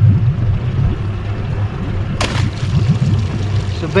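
Steady low rumble of wind and water around a small fishing boat on open water, with a short sharp burst of noise about two seconds in.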